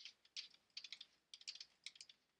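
Faint, quick, irregular ticks of a stylus tapping and scraping on a tablet screen while writing dots and letters, about fifteen small clicks in two seconds.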